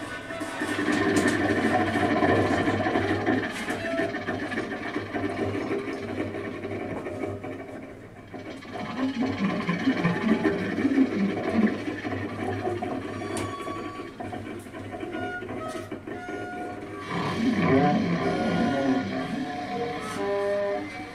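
Free-improvised jazz from a clarinet, bowed double bass and drums, in dense, scratchy, shifting textures with scattered held tones. It starts loud about a second in, thins out around the middle, then swells again twice.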